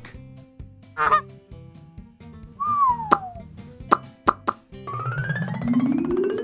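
A cartoon duck's quack about a second in, followed by cartoon sound effects: a falling whistle, three quick pops, and a rising sweep near the end, over light music.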